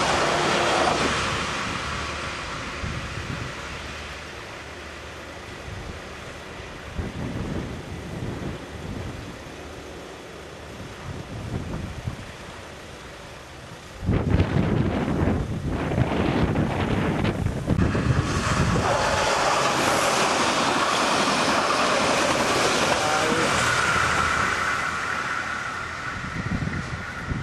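Narrow-gauge diesel train passing close by and fading away as it recedes, with wind on the microphone. About halfway through the sound cuts abruptly to a louder passage: a diesel railcar approaching, with heavy wind buffeting the microphone.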